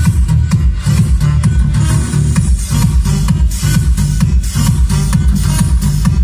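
Loud electronic dance music with a heavy, pulsing bass, played through a sound system's loudspeakers.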